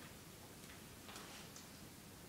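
Near silence: quiet room tone with a few faint soft ticks and rustles around the middle.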